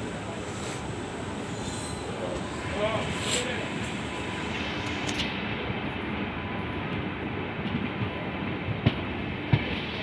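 Steady rolling noise of an LHB passenger coach's wheels on the track, heard from on board a slow-moving train. Near the end come two sharp clacks as the wheels strike rail joints.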